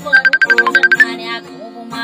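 Music: a woman singing to an acoustic guitar, with a fast run of repeated high picked notes, about nine a second, in the first second.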